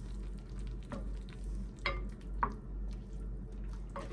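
Wooden spoon stirring cabbage and carrot pieces in a pot of water, knocking against the pot a few times, loudest just under two seconds in and again about half a second later, over a steady low hum.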